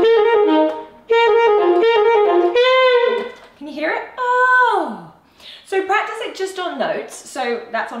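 Alto saxophone playing two short phrases, each ending in notes stepping downward as the air is taken away: a demonstration of a fall. Then a voice sighs an 'oh' that slides far down in pitch, imitating the fall, followed by a few spoken words near the end.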